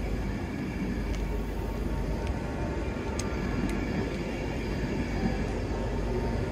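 Passenger train moving slowly past along the platform: a steady rumble from its wheels and running gear, with a few faint clicks.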